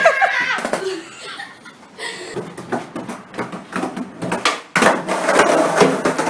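People laughing hard in irregular, breathy bursts, with a few words mixed in at the start.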